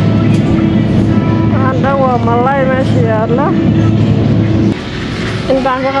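Steady low electrical hum of a supermarket refrigerated display case, which cuts off about three-quarters of the way through as the camera moves away from it. A child's high voice rises and falls over the hum twice.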